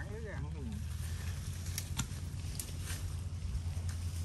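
Dry brush and fine-mesh netting rustling, with a few sharp twig snaps and clicks about halfway through as the net is laid around a pile of cut branches, over a steady low rumble. A brief voice sounds near the start.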